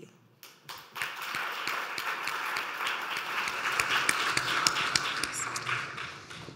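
Audience applauding: many hands clapping, starting about a second in and tapering off near the end.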